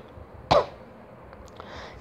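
A single short cough from the narrator, about half a second in, in a pause in his speech.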